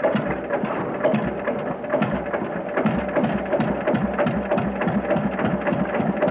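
A Deutz F2M steel tractor's two-cylinder diesel engine, started by hand crank, runs with a clattering noise. A regular low firing pulse settles in about a second in.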